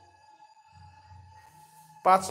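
Near silence with a faint steady high tone and a faint low hum under it.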